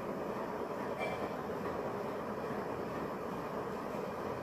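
Steady background noise, an even low rumble with hiss and no distinct events.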